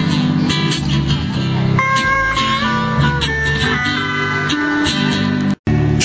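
Hawaiian-style band music: a steel guitar plays sustained, sliding melody notes over strummed guitar or ukulele accompaniment. The sound cuts out for a split second near the end.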